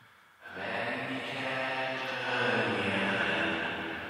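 A soloed sung vocal heard only through a fully wet delay and Valhalla VintageVerb reverb, with the highs cut. It comes in about half a second in as a washed-out, smeared voice with no dry signal.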